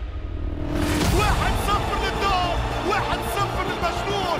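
Music with a steady low bass, joined just under a second in by a sudden burst of stadium crowd noise and a raised voice from the match footage.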